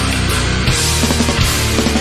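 Nu metal band playing a heavy instrumental passage with no singing, dense and loud throughout; the top end turns brighter and hissier for about the middle second.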